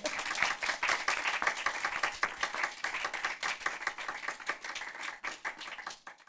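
A small audience applauding, a dense patter of hand claps that grows a little fainter toward the end.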